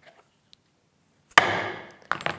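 A spring-loaded corner chisel is struck once on top, and its blade chops into the wood to cut a square corner at the marked line: one sharp strike about a second and a half in, fading quickly. A few faint clicks come before it as the tool is set on the board.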